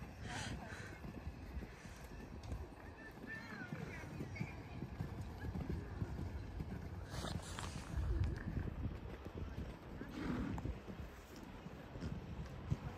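Hoofbeats of horses cantering on a sand arena surface, faint and irregular.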